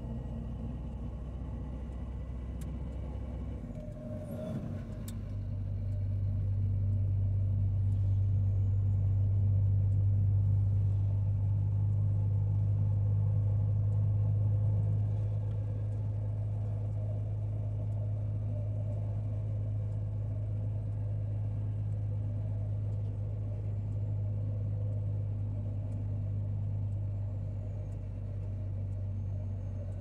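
Engine and road noise of a moving vehicle heard from inside, a steady low drone. About four seconds in, the engine note changes with a brief clatter, and the drone then grows louder for around ten seconds before easing slightly.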